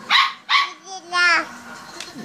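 A small dog barking: two short, sharp barks followed by a higher, longer yip about a second in.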